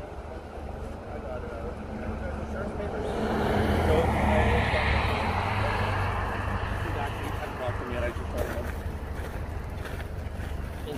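A vehicle passes on the highway: a rumble and tyre noise build to a peak about four to five seconds in, then fade.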